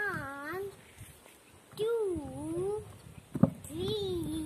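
A young boy calling out numbers in a drawn-out, sing-song voice: three long words about a second apart. A short knock, a bare foot landing on an upturned plastic tub, comes just before the third.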